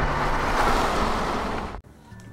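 A rushing whoosh transition sound effect from a video intro, with steady low tones beneath it. It dies away and cuts off sharply shortly before the end.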